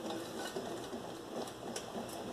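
Faint stirring of a spoon in a small saucepan of hot milk and egg-yolk mixture, with a few light clinks of the spoon against the pan.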